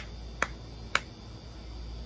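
Three sharp snap-like clicks about half a second apart, keeping a steady beat, over a low steady hum.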